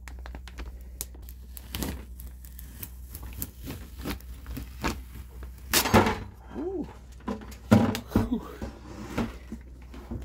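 Transfer paper being peeled off a vinyl decal on a plastic bucket, with crinkling of the paper and scattered knocks of the bucket being handled. There is a loud crackle just before six seconds in, as the last of the paper comes away, and another loud knock near eight seconds.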